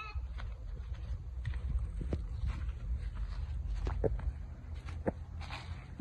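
Footsteps through grass and low plants over a steady low rumble, fairly quiet, with a brief high call right at the start; a faint voice says "yeah" about four seconds in.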